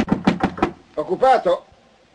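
About six quick knocks of knuckles on a wooden booth door, followed about a second in by a brief voice answering.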